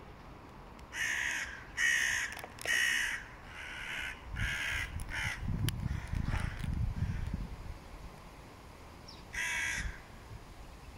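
A crow cawing: a run of five harsh caws in the first half, then one more near the end. A low rumble runs through the middle.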